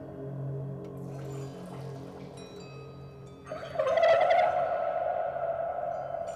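Experimental water music ringing in a very reverberant underground water reservoir: a lingering low drone with faint high tones, then about three and a half seconds in a louder, wavering tone starts as a man vocalises into a water-filled balloon held to his mouth.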